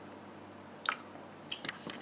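Heavy whipping cream pouring from a carton into a plastic measuring cup, faint, with a sharp click about a second in and a few small clicks and taps near the end.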